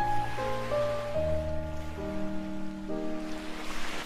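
Slow piano music: a simple melody of single notes stepping down and then up, over low bass notes that change about once a second.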